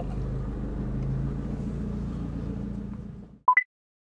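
Abarth 595's turbocharged four-cylinder engine and road noise heard from inside the cabin while driving: a steady low hum that the driver calls much more solid with the door strikers reinforced. It fades out after about three seconds, and a short rising two-note electronic blip follows near the end.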